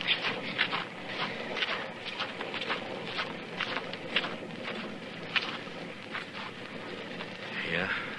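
Radio-drama sound effects of footsteps, irregular short crunches about two or three a second, over a steady hiss of storm rain.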